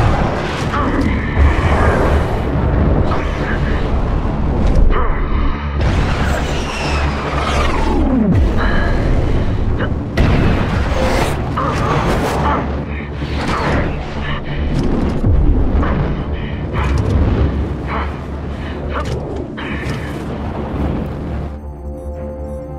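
Action-film soundtrack mix: a music score over loud fighter-jet engine rumble, with repeated sudden booms and hits and short radio-style voice lines.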